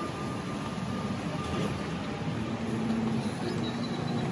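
Steady outdoor traffic noise, with a vehicle's engine growing a little louder in the second half.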